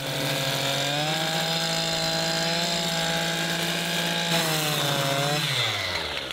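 Stihl petrol strimmer with a nylon string head cutting grass, its engine running at steady high revs. Near the end the revs drop away and the pitch falls.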